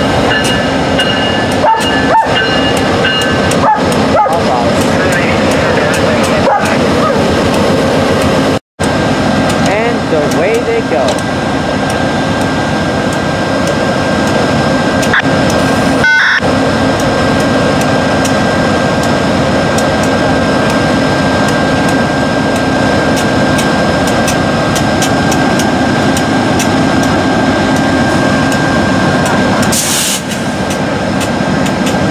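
Diesel locomotive engines of a GEXR freight train running loudly beside the platform, a steady dense rumble, as a VIA passenger train rolls up alongside and stops. The sound cuts out for an instant about nine seconds in.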